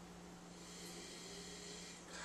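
Quiet room tone: a faint, steady hum under a soft hiss.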